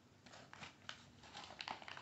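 Brown paper bag rustling faintly as a hand rummages inside it, in a scatter of small, irregular crackles.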